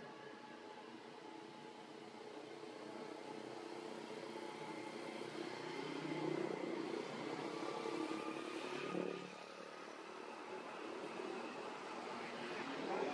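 A motor vehicle's engine running in the background, growing louder over several seconds and dropping away about nine seconds in.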